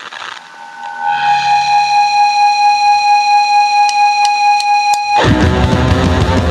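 A single distorted electric guitar note held steady in pitch, with four quick drumstick clicks counting in near the end. Then the full hardcore punk band comes in loud with distorted guitar, bass and drums.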